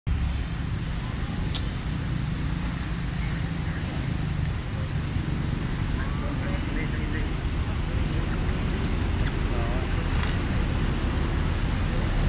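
Steady low outdoor rumble of background noise, with faint distant voices and a few sharp clicks.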